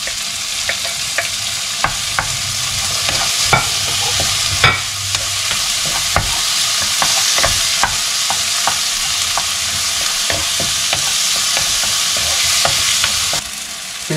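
Chopped tomatoes and onions sizzling in hot oil in a non-stick frying pan, with a wooden spoon clicking and scraping against the pan as they are stirred. The sizzle cuts off suddenly near the end.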